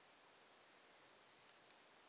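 Near silence: faint room hiss, with a faint brief high-pitched squeak about one and a half seconds in.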